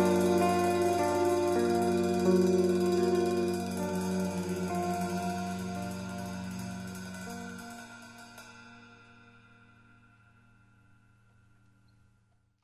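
The closing sustained notes of a modern jazz quartet piece for guitar, tuba, tenor saxophone and drums ring out and fade slowly away. A low held note outlasts the others and dies to near silence at the very end.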